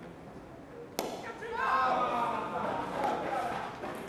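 A single sharp crack of a cricket bat striking the ball about a second in, followed by loud shouting voices.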